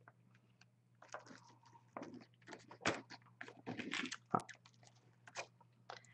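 Palette knife scraping and smearing modeling paste across a plastic stencil on a canvas: a run of faint, short, irregular scrapes.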